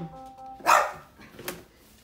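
A house dog barks once, a little under a second in, after a short steady tone; a single sharp click follows.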